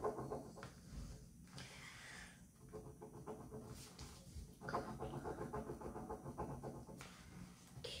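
Faint pen scratching on paper in quick rhythmic strokes while drawing, coming in spells with the longest in the second half.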